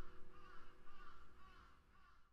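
A crow cawing faintly through an open window, a quick run of about five caws at roughly two a second.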